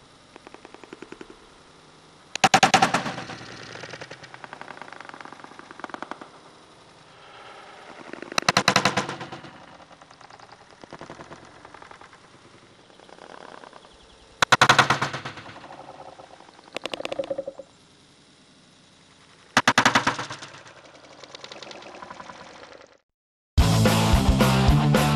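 Slowed-down audio of a Kershaw Tension folding knife slashing a water-filled two-liter plastic bottle: four loud, drawn-out hits about six seconds apart, with a fast rattling texture in between. Loud rock music cuts in just before the end.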